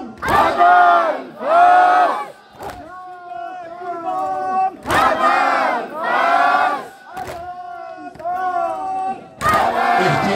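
Call-and-response mourning chant (noha): a lead singer sings a line, and a large crowd of men answers twice with two loud drawn-out chanted syllables. Sharp slaps of hands striking chests in unison come every couple of seconds between the lines.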